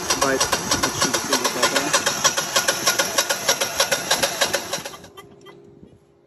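Generac air-cooled standby generator's starter cranking the engine with a fast, even beat, but the engine never fires because its fuel supply is cut off. The cranking stops suddenly about five seconds in. It is one of the repeated failed crank attempts that end in an 1100 overcrank fault.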